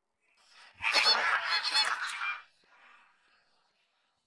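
Seagulls calling: a burst of several cries starting about a second in and lasting about a second and a half.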